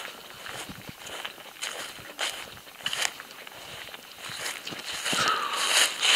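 Footsteps on the ground: a few irregular soft steps and rustles as a person walks slowly forward, with faint hiss.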